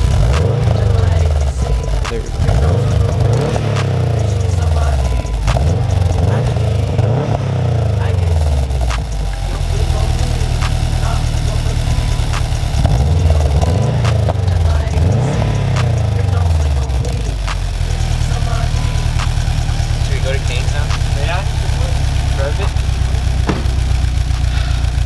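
2009 Subaru WRX's turbocharged flat-four running through an Invidia Q300 cat-back exhaust, revved repeatedly with quick rises and falls in pitch through the first several seconds and again around the middle. It then settles into a steady idle for the last six seconds or so.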